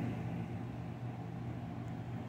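A low, steady rumble with a faint hum in it, and no clear events.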